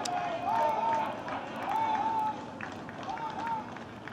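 Men's voices shouting from the touchline: three raised two-part calls about a second apart, over faint crowd and outdoor noise, with the shouting fading towards the end.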